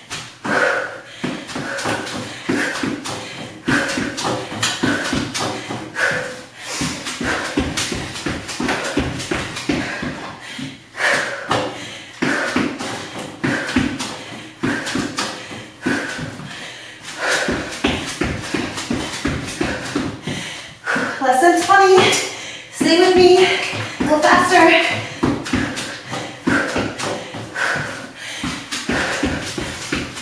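Sneakers landing and shuffling quickly on an exercise mat over a wood floor during a bodyweight cardio drill, as a string of soft knocks with heavy breathing. A few seconds of voice-like sound come about two-thirds of the way through.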